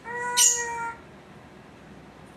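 Congo African grey parrot giving a single call about a second long, held on one steady pitch, with a sharp hissy burst halfway through.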